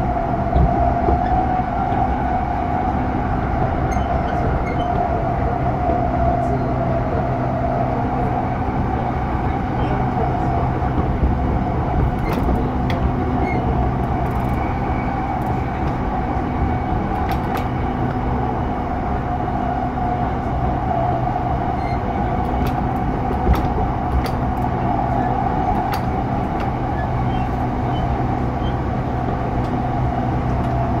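JR East E233-0 series electric commuter train running at a steady speed, heard from inside the car. It makes a continuous drone of wheels and drivetrain with no rising or falling pitch, and a few faint clicks.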